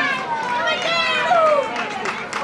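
Outdoor crowd voices, several high-pitched voices calling out and chattering over one another.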